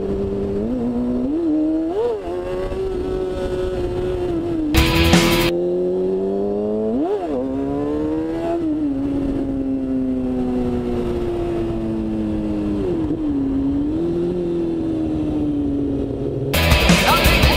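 A stock 2014 Kawasaki Ninja 636's inline-four engine running at road speed, heard from the rider's seat, with quick rises in pitch from throttle blips at about two and seven seconds and a slow fall in pitch afterwards. A short burst of loud rushing noise comes about five seconds in.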